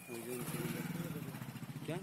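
A motorcycle engine running close by, coming in about a third of a second in and fading toward the end, with men's voices over it.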